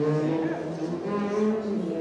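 A low-pitched jazz horn playing a few long held notes that step between pitches, with a faint murmur of voices underneath.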